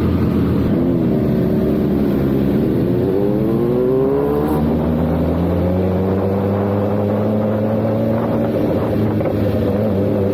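BMW S1000RR inline-four engine pulling away from a stop: the revs climb from about two seconds in, drop sharply at a gear change about four and a half seconds in, then rise slowly and steadily.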